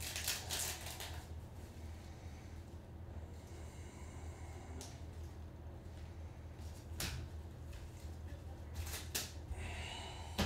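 Topps Chrome trading cards being flipped through by gloved hands: soft slides of card stock with a few sharp clicks as cards snap against the stack, over a low steady hum.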